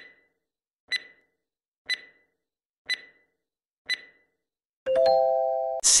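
Quiz countdown timer sound effect: five short high ticks, one a second, then a steady chime of several tones lasting about a second as the countdown runs out.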